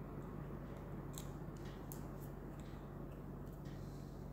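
Faint scratching and a few sharp little clicks of fingers picking at the plastic seal on a 26650 lithium-ion cell, over a low steady hum.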